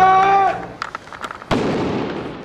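A shout held for about half a second, then firework crackling and one loud bang about one and a half seconds in, with an echoing tail.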